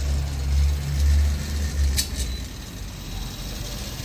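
A low rumbling hum, loudest for the first couple of seconds and then fading, with a couple of faint clicks about two seconds in.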